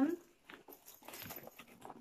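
Chunky silver metal bag chain being picked up and handled, its links giving a few faint, scattered clicks.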